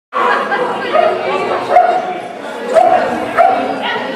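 Small dog barking during an agility run, about five short barks spaced under a second apart, over a murmur of voices in a large hall.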